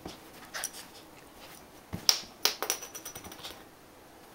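A cluster of sharp clicks and clacks about two seconds in, lasting over a second, after a single click earlier: a small metal pin badge knocked about in a hand as a small dog lunges and snaps at it.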